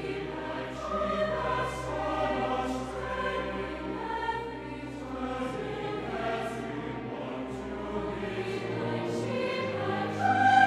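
Large mixed choir singing with orchestral accompaniment, the voices held in long sustained notes over a low bass note that changes about eight and a half seconds in.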